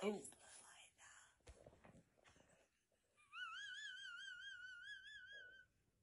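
A woman's breathless, nearly silent laughter in faint wheezy gasps, then a faint high-pitched squeal of laughter that wobbles up and down in quick pulses for about two seconds.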